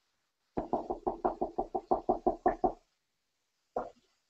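A quick, even run of about fourteen knocks in a little over two seconds, a wire spider strainer tapped against the glass bowl of flour, with one more knock near the end.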